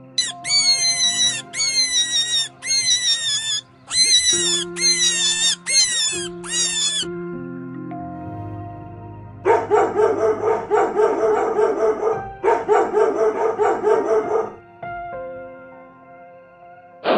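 Background music with animal calls laid over it: six short bursts of high squealing calls, each falling in pitch, in the first half. Then two fast runs of rough, rapidly pulsed calls.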